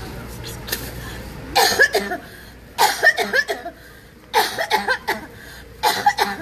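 A woman coughing and retching into a plastic bag in four loud fits, about a second and a half apart.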